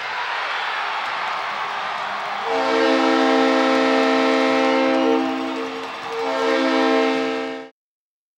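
Arena crowd cheering at a hockey goal, with the arena's goal horn blaring over it in two long blasts, about two and a half seconds and then a second and a half. The sound cuts off suddenly near the end.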